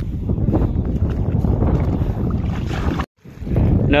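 Wind buffeting the microphone, a steady low noise that cuts out briefly about three seconds in.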